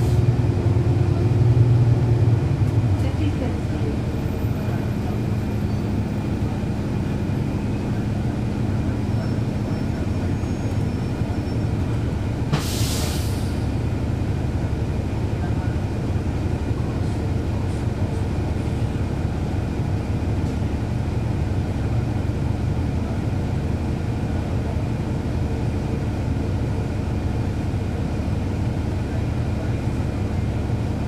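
Cummins ISL9 diesel engine of a 2011 NABI 40-SFW transit bus, heard from on board. It works harder for the first few seconds, then settles to a steady drone as the bus rolls along. There is a short hiss about 13 seconds in.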